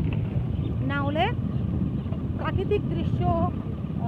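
A woman's voice speaking in short bursts over a steady low rumble that is most likely wind buffeting a phone microphone.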